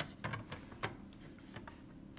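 Hard plastic graded-card slabs being handled and set down: a few light clicks and taps, about four in two seconds, faint over room tone.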